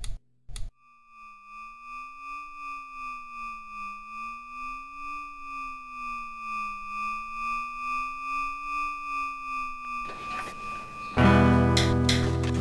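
Two quick clicks as a laptop's power button is pressed, then a steady synthesized electronic hum: several high tones held level over a low tone that slides slowly up and down, with a gentle pulsing. About 11 seconds in, a loud burst of music cuts in.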